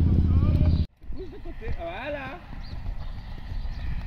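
Hoofbeats of a horse cantering on arena sand, an irregular low thudding. Before it, a loud low rumble cuts off abruptly about a second in.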